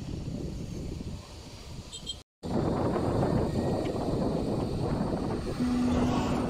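Wind rushing over the microphone of a camera on a moving bike, a low buffeting noise that drops out completely for a moment about two seconds in and comes back louder. A steady low tone comes in near the end.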